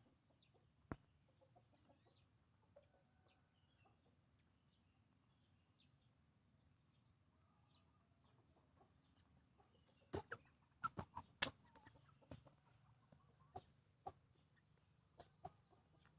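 Young Pama chickens clucking faintly amid near silence, with small high chirps scattered through the first half. A quick cluster of sharp clicks comes about ten to eleven seconds in.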